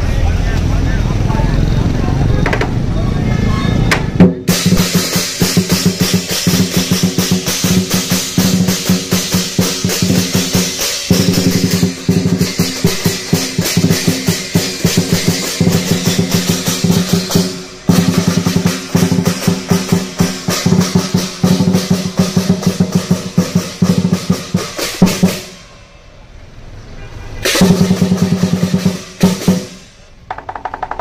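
Lion dance drum and cymbals playing a fast, unbroken beat that starts about four seconds in and breaks off a few seconds before the end. It comes back for a short burst near the end.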